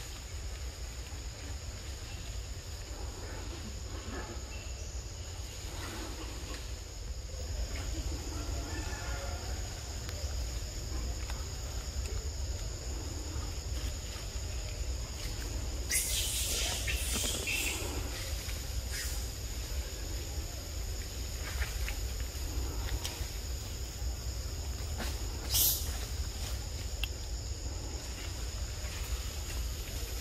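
Forest ambience: a steady high insect drone over a low rumble of wind. A burst of crackling comes a little past halfway, and a single sharp click comes near the end.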